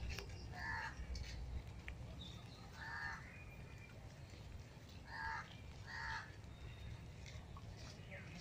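A bird calling four times in short, harsh calls: one about a second in, one about three seconds in, and two close together a little past five seconds. A low outdoor rumble runs underneath.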